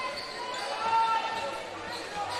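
A basketball dribbled on a hardwood court, with short high squeaks of sneakers on the wooden floor and arena crowd noise.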